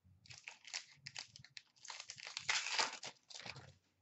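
Wrapper of a 2016-17 Upper Deck SP Authentic hockey card pack crinkling and tearing as it is opened by hand, an irregular run of crackles that is loudest a little past the middle.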